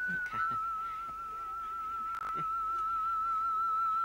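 Soundtrack music: a single high, pure note held with a slow wavering vibrato, like a whistle or theremin, dipping slightly in pitch just after it starts. A faint click sounds about two seconds in.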